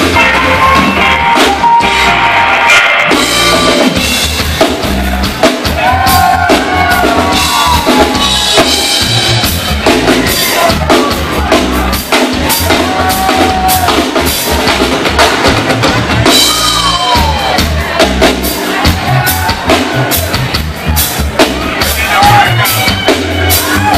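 Live band music played loud, with a drum kit and electric bass carrying a steady groove and melodic lines gliding above them.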